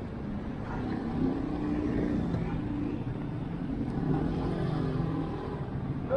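Street traffic: a motor vehicle's engine running under a steady low rumble.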